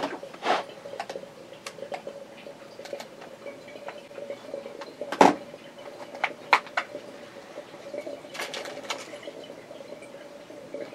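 Hands unwrapping a small pen package: scattered clicks, taps and crinkling of plastic and card, the sharpest click about five seconds in and a burst of crinkling near the end, over a faint steady hum.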